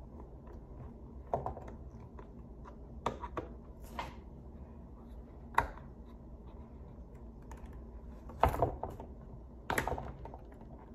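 Scattered sharp plastic clicks and knocks from a football helmet and its visor being handled and fastened to the facemask, a few seconds apart, with the loudest ones near the end.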